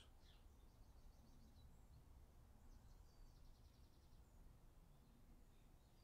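Near silence: quiet room tone with faint birdsong, two short high trills, one about a second in and another about three seconds in.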